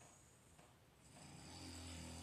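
Near silence: room tone, with a faint low hum coming up about a second in.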